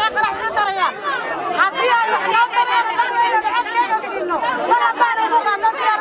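A woman speaking loudly and continuously through a handheld megaphone.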